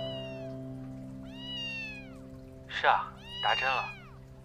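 Kitten mewing: three thin, high-pitched mews, each arching up and down in pitch, one at the start, one about a second and a half in, one near the end.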